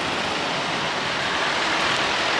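Honda Zoomer X scooter's single-cylinder engine idling steadily, just started from the alarm's remote.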